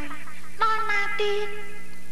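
A woman's high-pitched voice speaking with expression, drawing out one long syllable from about half a second in, over a steady low hum on the old film soundtrack.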